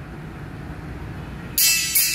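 Beyma CP22 compression horn tweeter being tested: over a low steady hum, music suddenly comes through it about a second and a half in, loud and treble-only, with no bass.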